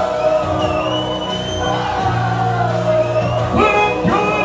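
Live rock band playing: a man singing into the microphone over electric guitar, bass guitar and drums.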